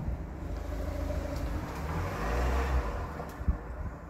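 A car driving past on a residential street. Its engine and tyre noise swells to a peak about halfway through, then fades as it moves off, with a brief click near the end.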